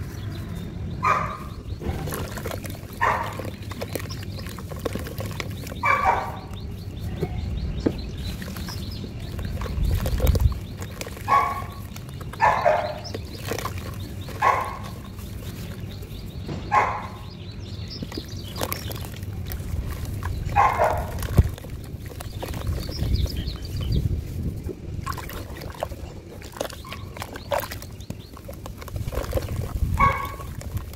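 A hand working wet, muddy sand and water in a plastic tub, giving a series of short squelching, sloshing sounds every second or few seconds, with a low rumble underneath.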